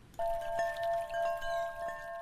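Chimes ringing: a cluster of held, ringing tones that begins just after the start, with a few light strikes over them.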